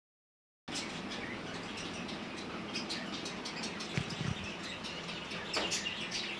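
Small birds chirping repeatedly over steady room noise, with two soft thumps about four seconds in.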